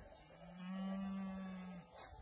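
A cow mooing once: one long, low call that starts about half a second in and holds a steady pitch for over a second.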